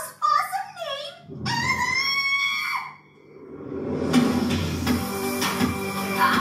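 Cartoon character voices from the film, a short laugh and then a drawn-out high-pitched cry, followed about four seconds in by end-credits music rising in and playing on. All of it comes through a TV's speakers into a small room.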